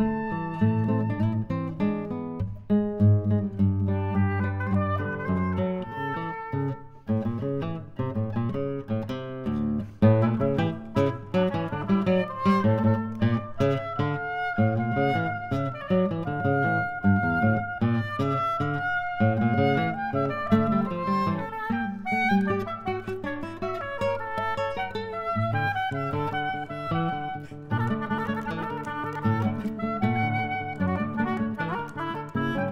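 Nylon-string classical guitar and oboe playing a chamber duo: the guitar plucks a steady run of notes while the oboe plays longer, held melodic lines above it.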